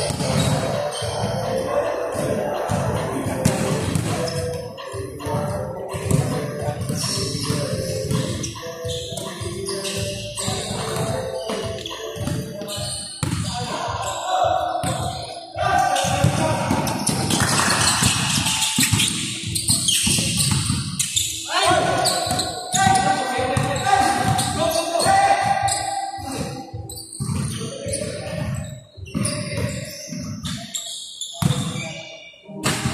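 Basketballs bouncing on the court floor during a pickup game, in repeated dribbles and bounces.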